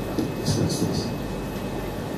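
Low, steady rumbling room noise with faint, indistinct voices and a few soft hissy sounds, in a pause between spoken passages.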